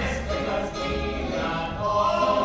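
A show tune in full swing: a group of voices singing together over instrumental accompaniment with a steady low beat.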